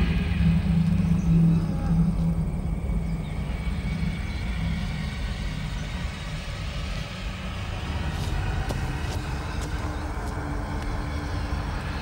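A steady low rumbling drone, strongest in the first two seconds with a low hum on top, then easing slightly.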